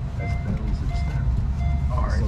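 Electronic two-note beeping: a short high note followed by a short lower note, repeating about every three quarters of a second, over a steady low rumble and faint voices.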